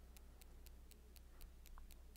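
Near silence: room tone with a low steady hum and faint, evenly spaced ticks, about four a second.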